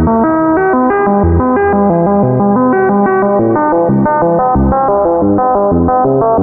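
Critter and Guitari Pocket Piano MIDI synthesizer running its arpeggiator: a fast stepping run of short notes, about six a second, with deeper bass notes roughly once a second, all washed in heavy reverb.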